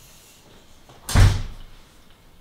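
A door being shut once, firmly, about a second in: a single loud thud that dies away quickly.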